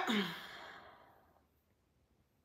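A woman's breathy sigh, trailing off within the first second and followed by silence.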